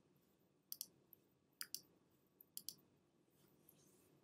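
Faint computer mouse clicks, mostly in quick close pairs, several times in the first three seconds.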